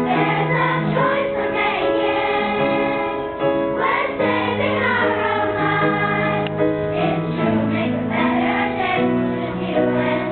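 Children's choir singing a song, the voices moving between sustained notes.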